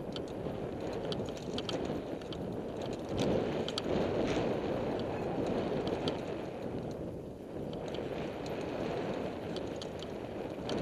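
Mountain bike rolling along a dirt singletrack, heard from the rider's own helmet camera: wind rush on the microphone and tyre noise, swelling a few seconds in, with scattered light clicks and rattles from the bike.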